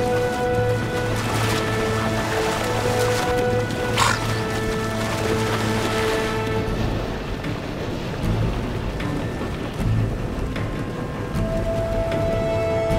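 Background music with long held notes over the steady rush of white-water rapids, with one sharp splash-like burst about four seconds in.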